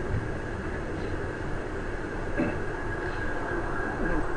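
Steady low rumble and hiss of background room noise, with a faint short sound about two and a half seconds in.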